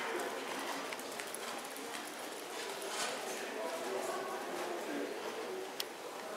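A horse's hoofbeats at a trot on sand arena footing, with indistinct voices in the background.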